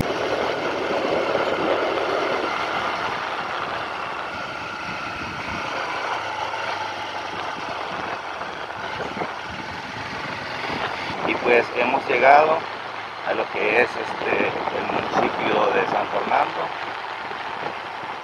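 A road vehicle running along, a steady engine and road noise that eases off over the first several seconds. From about eleven seconds in, voices are heard over it.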